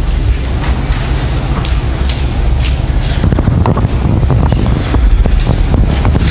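Steady low rumble of room noise on the microphone, close to wind noise, with a few faint ticks. Fainter indistinct sound, possibly distant voices, comes in from about halfway through.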